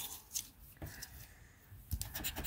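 Faint rustling and a few light ticks of a cardboard scratch-off lottery ticket being slid and handled on a tabletop, with a sharper tap near the end as a plastic scratcher touches the card.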